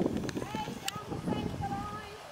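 Hoofbeats of a horse trotting on a sand arena.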